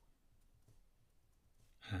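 Faint, scattered taps of a pen tip dotting on paper in a quiet room. Near the end a man's voice starts a drawn-out, breathy 'and'.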